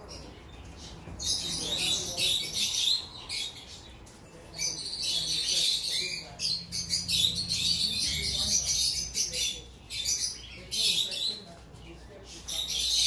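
Many small caged birds chirping and twittering together, a dense high chatter that comes in bursts with short pauses, over a low steady hum.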